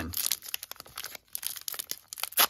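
Wrapper of a 2021 Topps Archives baseball card pack being torn open and peeled apart by hand: a run of irregular crinkles, crackles and rips.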